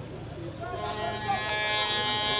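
A steady, buzzing, pitched tone that swells in about a second in, with voices murmuring faintly underneath.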